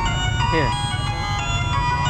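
An electronic tune of steady beeping notes stepping from pitch to pitch like a jingle, over a constant low traffic rumble.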